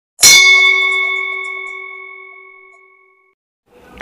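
A bell-like ding struck once about a quarter second in, its ringing tones dying away over about three seconds.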